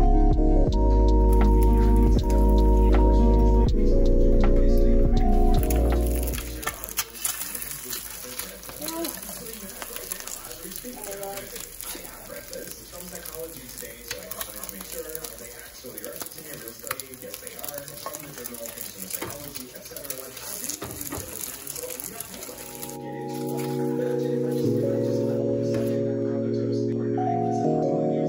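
Background music for the first few seconds. It gives way to eggs frying in a nonstick pan: a steady sizzle with many small crackling pops. The music comes back near the end.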